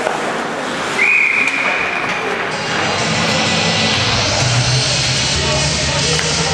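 Referee's whistle blown once to stop play: one high, steady tone lasting just over a second, starting about a second in. Music starts about three seconds in and runs to the end.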